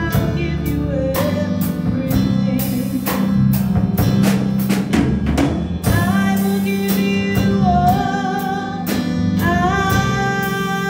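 Electronic keyboard playing a slow song over a steady drum beat, with a woman singing held notes along with it.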